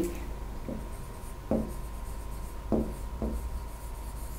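A pen writing a word on a board surface: a few short, faint scratching strokes at uneven intervals, heard over a faint steady whine.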